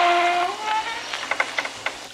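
Sound-effect door latch and lock clicking and rattling as someone works a stuck old front door open, over a steady hiss of rain. A held tone fades out about half a second in, and the clicks follow in a loose run after it.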